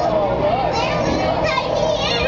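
Children's and people's voices chattering over a steady, wavering hum.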